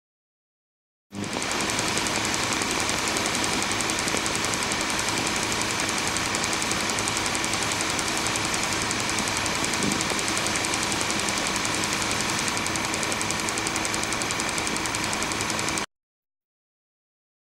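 Film projector running: a steady mechanical whir with a rapid, even clatter. It starts about a second in and stops abruptly near the end.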